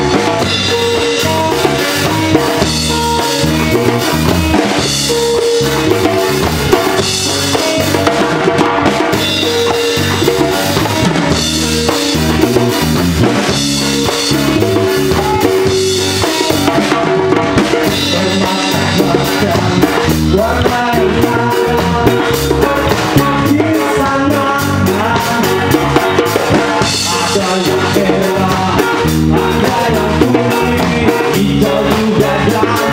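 Live band playing an instrumental passage: electric guitars, bass guitar, drum kit and a hand-played djembe, with a steady beat.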